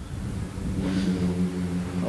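A motor vehicle's engine running with a steady low hum, starting about half a second in.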